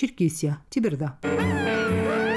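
A voice, then a little past halfway a sudden musical transition sting: a held synth chord with several tones sweeping upward.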